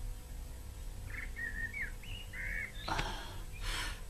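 Faint bird chirps in the background: a few short calls between about one and three seconds in, followed by two brief swishing noises near the end, over a low steady hum.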